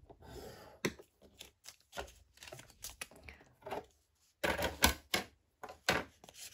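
Metal-tipped stylus scoring paper along the groove of a plastic scoring board: a run of light scratches and small irregular clicks. About three-quarters of the way through come louder rustles and knocks as the paper pieces are picked up and handled.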